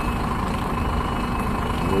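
Truck engine running steadily at low revs as a tractor-trailer rig reverses slowly, heard from inside the cab.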